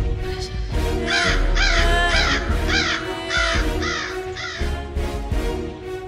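A crow cawing a run of about eight quick caws, about two a second, starting about a second in, over dramatic music with a low pulse.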